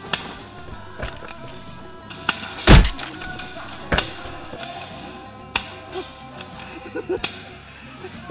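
Spring-powered airsoft guns firing during a skirmish: a string of separate sharp cracks and knocks, the loudest a heavy thump a little under three seconds in. Background music runs faintly underneath.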